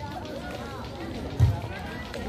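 A volleyball is struck once with a dull thump about one and a half seconds in, over the chatter of players and spectators around the court.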